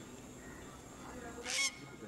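Faint, scattered animal calls, with one short, louder high-pitched call about one and a half seconds in.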